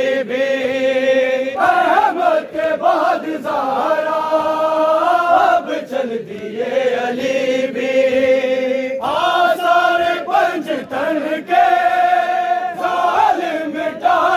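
A group of men chanting a Shia noha (mourning lament) in unison, in long held sung phrases that slide between notes, with short breaks between lines.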